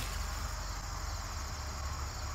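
Steady high-pitched chorus of insects trilling, typical of crickets in late summer, over a faint low rumble.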